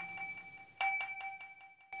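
A small metal bell, of the kind struck to mark the verses in Buddhist chanting, rings in the pause between verses. Its first stroke is still dying away, it is struck once more just under a second in, and that ring is cut off abruptly near the end.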